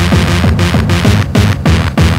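Early-1990s Australian hardcore electronic music: a heavy kick drum hits fast and evenly, about four times a second, each hit dropping in pitch, under a dense, noisy wash of sound.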